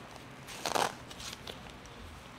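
Blood pressure cuff's Velcro being pressed closed around an arm: one short rustle a little under a second in.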